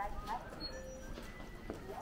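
Footsteps on a hard, polished shop floor, with indistinct voices in the background.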